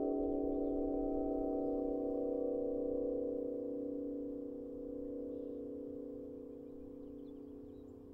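Celtic harp strings sounded by the wind: several steady, sustained tones ringing together with a slow beating between them, gradually fading away, with low wind noise underneath.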